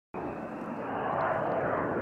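Tupolev Tu-22M3 bomber's twin turbofan engines: steady jet noise that cuts in abruptly just after the start and grows louder as the aircraft climbs overhead.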